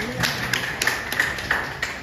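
An audience clapping, a dense patter of many hands with sharp individual claps standing out.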